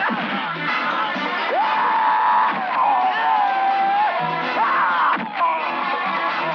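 Dramatic film background score with long held high notes that swoop up into each note. Three sharp hits cut through it, fight punch sound effects, at the start, about halfway and near the end.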